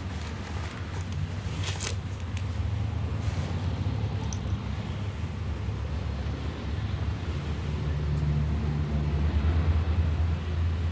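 Steady low engine rumble of a motor vehicle, with a few faint clicks in the first seconds and the rumble swelling slightly near the end.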